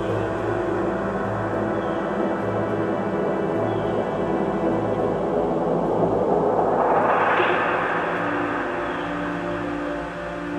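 Music: sustained low notes under a hazy wash of sound that swells to a peak about seven seconds in and then fades.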